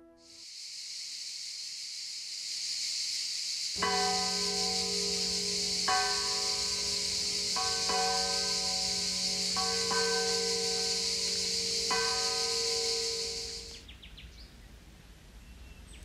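A church bell tolling, one stroke about every two seconds, each stroke ringing on, over a steady high-pitched hiss. Both stop together near the end.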